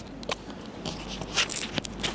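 Handling noise on a clip-on lapel microphone while it is adjusted: scattered scrapes, clicks and crackles, none of them loud.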